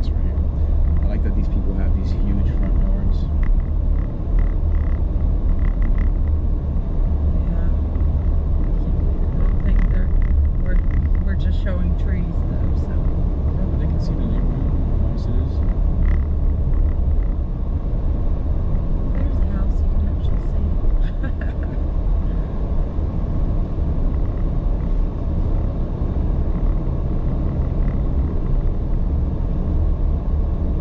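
Steady low rumble of a car driving, with road and engine noise.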